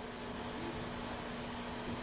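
Steady room tone: an even hiss with a faint, constant low hum.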